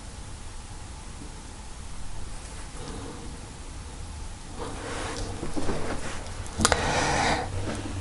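Hands rustling and sliding over tarot cards on a cloth table, starting about halfway through, with one sharp tick near the end, over a faint steady low room hum.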